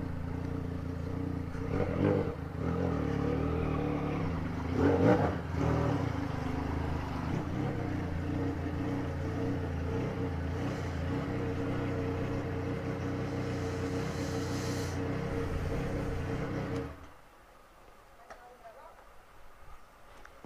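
Yamaha Tracer 900 GT's three-cylinder engine idling steadily as the bike rolls slowly up to a fuel pump, then switched off, cutting out abruptly near the end.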